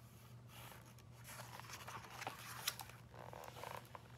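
Faint paper rustling with a few light clicks as a page of a hardcover picture book is turned and the book is handled.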